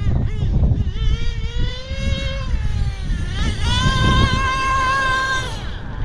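Losi 8IGHT nitro buggy engine, fitted with a Novarossi tuned pipe, being warmed up: a high-pitched whine that rises and falls as it is revved, then holds steady for about two seconds before dropping away near the end. A low rumble runs beneath it.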